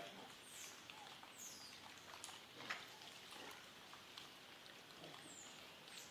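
Faint background ambience with a few brief, high, falling chirps and one sharp tap about two and a half seconds in.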